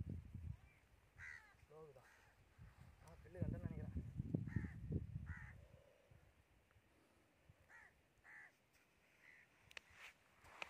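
A series of short bird calls, spaced irregularly about a second apart. A low rumbling noise runs between about three and five and a half seconds in.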